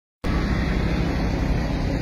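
Steady low rumbling background noise with no distinct events, starting abruptly just after the clip opens.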